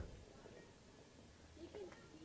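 Near silence: faint background hiss, with a faint short warbling tone near the end.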